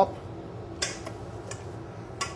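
Plastic wrap crinkling as it is pressed over a stainless steel mixing bowl, with one sharp crackle about a second in and a fainter one after it.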